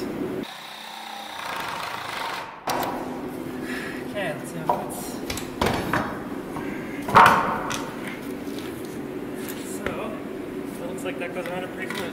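A wooden bottom plate knocking and scraping on a concrete floor as it is slid into place around plumbing pipes. There are several sharp knocks, the loudest about seven seconds in, over a steady low hum.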